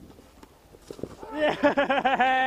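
A person bursting into loud laughter a little past halfway through: quick, rising 'ha-ha' pulses that run into a long held note.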